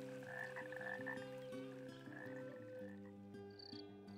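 Faint frog croaking, low and drawn out and shifting in pitch every half second or so, with a couple of short high chirps near the end.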